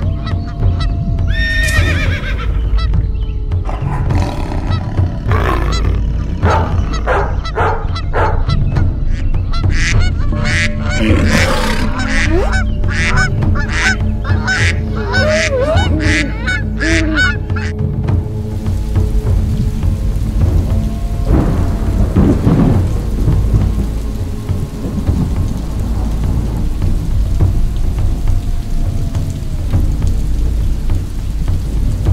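A flock of geese honking in rapid, overlapping calls over a low, steady drone with slow gliding tones. About two-thirds of the way in, the honking stops and steady rain takes over.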